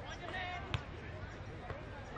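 An Australian rules football struck once with a sharp thump about three-quarters of a second in, over distant players' voices calling across the field.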